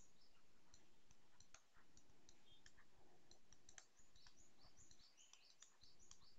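Faint, irregular light clicks and taps of a stylus writing on a pen tablet, over near-silent room tone.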